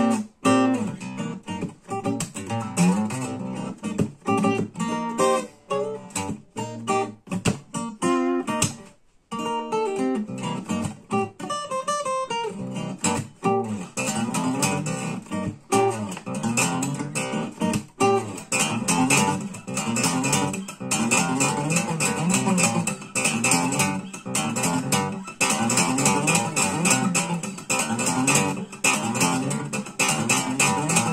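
Solo steel-string acoustic guitar played fingerstyle, with sharp percussive strokes among the picked notes. It stops briefly about nine seconds in, then settles into a busier, steady rhythmic pattern.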